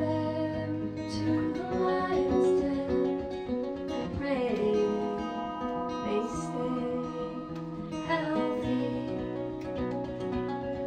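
Live acoustic guitar played by a woman who sings at the microphone, over long sustained electronic keyboard tones.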